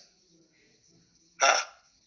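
A pause of near silence, then one short, abrupt 'ha' from a man's voice about one and a half seconds in.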